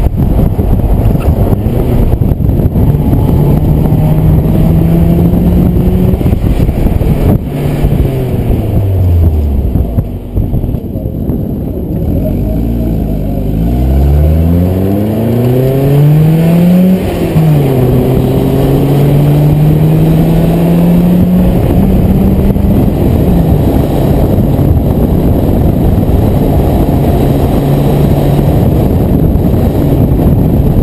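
BMW E36 318i's four-cylinder engine heard from inside the car during an autocross run. Its pitch falls as the car slows about eight seconds in, then climbs under hard acceleration. It drops sharply with a gear change about seventeen seconds in, rises again and then holds fairly steady.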